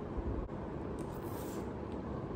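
Steady low background hum of room noise, with a brief faint hiss about a second in.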